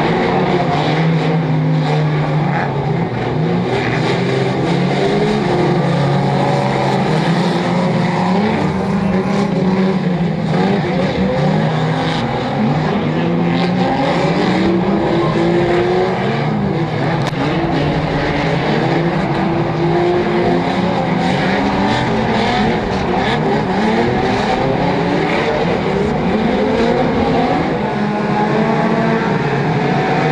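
Several banger racing cars' engines running and revving together, their notes rising and falling over one another, with scattered sharp knocks of cars hitting one another.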